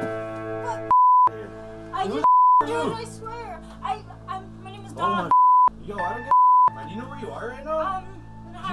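Four short censor bleeps, each a pure tone about a third of a second long that blanks out dialogue, about one, two and a half, five and a half and six and a half seconds in. They cut into speech over background music with held notes.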